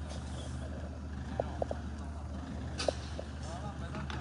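Street ambience: a steady low hum with faint, distant voices and a few short, faint calls or tones.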